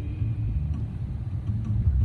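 Low rumble of a car driving slowly along a street, heard from inside the cabin.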